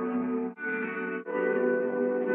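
Background music: sustained chords that change twice, each change marked by a brief break.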